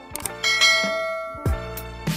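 A single bell-chime sound effect, the notification-bell ding of a subscribe animation, rings about half a second in and fades over about a second, over background music with a steady beat.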